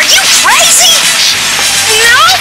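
Cartoon action sound effects: a quick run of swishing whooshes that sweep up and down in pitch over a steady rush of noise.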